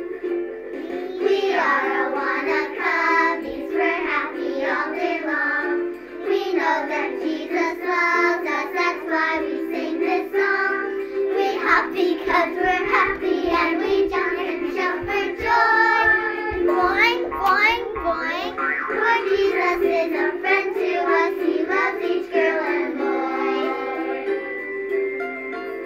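Children singing a lively song over music accompaniment.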